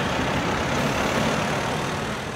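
Road traffic noise: a vehicle driving past close by, a steady engine and tyre rumble that eases slightly near the end.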